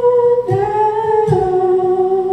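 Male voice holding wordless sung notes, stepping down in pitch about half a second in and again just past a second, over a strummed acoustic guitar.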